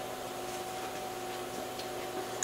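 A steady electrical hum with a hiss behind it, unchanging throughout.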